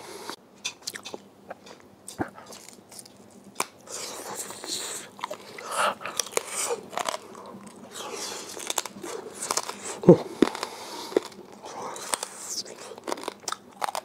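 A man chewing a mouthful of crispy-skin roast pork belly close to a clip-on microphone: irregular crunches and crackles with wet mouth sounds.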